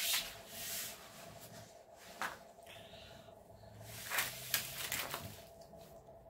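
Intermittent rustling and scraping of paper being handled and smoothed down on a floor, with one sharp click about two seconds in.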